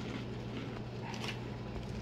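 Faint crunching of dry, hard cereal balls being chewed, a few soft crunches over a steady low hum.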